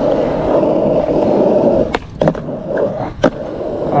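Skateboard wheels rolling on rough asphalt with a steady grainy rumble. About two seconds in there is a sharp pop and a clack of the board, typical of a trick attempt, and then quieter rolling. About a second later comes another loud, sharp clack of wood.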